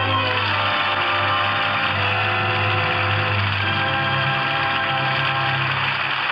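Orchestra music of long held chords that shift a couple of times, played as a bridge between the announcer's introduction and the host's greeting.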